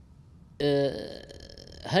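A man's brief low voiced throat sound, starting suddenly about half a second in and held on one pitch for a moment, trailing off into a breathy exhale; speech resumes near the end.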